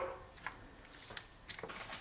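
A few faint, scattered clicks of small steel screwdriver bits and the screwdriver being handled on a tabletop, with a soft knock at the start.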